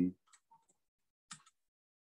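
A few faint, scattered clicks from someone working a computer's keyboard and mouse, the clearest a little past the middle.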